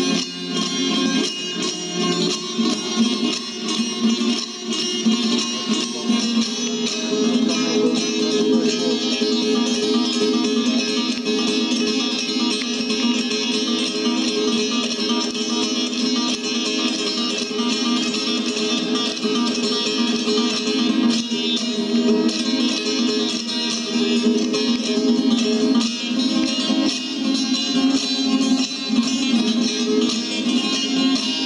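Solo bağlama (Turkish long-necked lute) playing an instrumental passage of fast, continuous plucked notes, the lower strings filling out a few seconds in.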